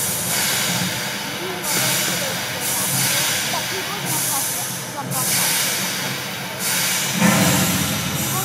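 Loud hissing in surges of one to two seconds with short breaks between them, over a low rhythmic rumble and voices in the crowd.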